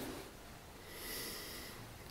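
A man's faint breath at a pulpit microphone, a soft inhale swelling about a second in.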